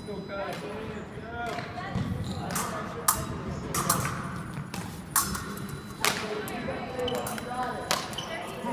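Sharp clicks and knocks from an épée bout, the fencers' footwork on the floor and their blades meeting, about half a dozen in the second half, over background voices in a large hall.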